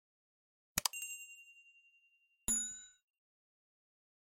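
Sound effects of an animated subscribe button: a click with a bright ding that rings out and fades over about a second and a half, then about a second later a second, shorter click with a chime.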